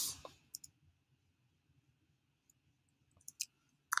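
Computer mouse and keyboard clicks: a quick double click about half a second in, then a few keystrokes near the end as a search is typed. A short hiss at the very start is the loudest sound.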